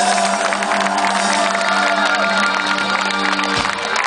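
Live band holding out a sustained closing chord on acoustic guitars, double bass and accordion, with the crowd cheering over it; the chord stops shortly before the end.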